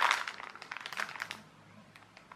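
Plastic mailing bag crinkling as it is handled, a run of sharp crackles that dies away after about a second and a half.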